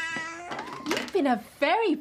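A baby crying just after an injection: a held wail that breaks into short rising-and-falling cries.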